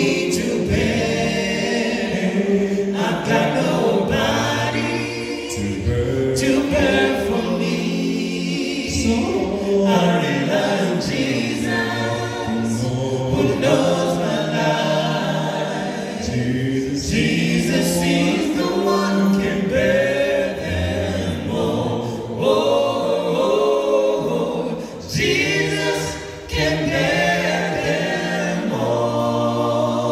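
Male a cappella vocal group of five voices singing a gospel song in harmony into microphones, with no instruments.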